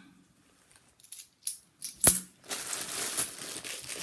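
A few light clicks of £2 coins, with one sharper metallic clink about two seconds in, then clear plastic coin bags crinkling steadily as they are handled.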